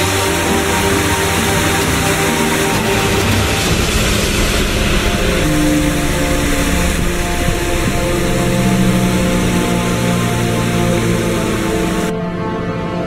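Background music over a steady whirring rush from a small DC motor driving a homemade four-blade fan at full speed. The rush cuts off suddenly at the end.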